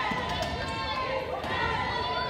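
Wheelchair basketball game on a hardwood court: players' voices calling out, wheelchair tyres squeaking on the floor, and a few brief knocks about half a second in.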